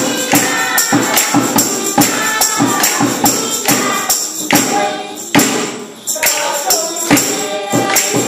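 A group of voices singing to a steady percussion beat of about two sharp strikes a second, with a brief break in the beat and singing about two-thirds of the way through.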